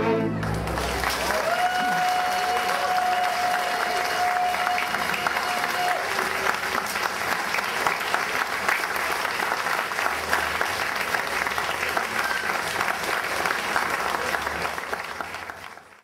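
Bowed fiddle music stops on its final note, and an audience breaks into steady applause. A long, steady whistle rises out of the crowd a second or two in and holds for about four seconds. The clapping fades out near the end.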